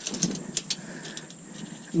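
Light handling sounds of a tape measure and gloved hands working along a landed gar on a boat deck: a few sharp ticks in the first second, then soft rustling.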